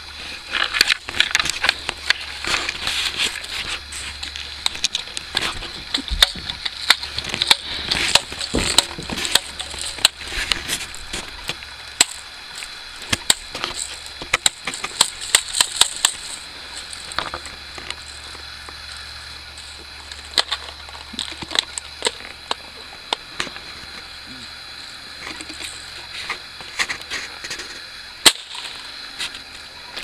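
A BB gun fired over and over: a long string of short, sharp cracks at irregular spacing, sometimes several a second, with one especially loud crack near the end.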